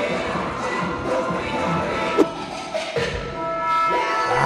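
K-pop dance track playing with a steady beat, with a single sharp thump about two seconds in.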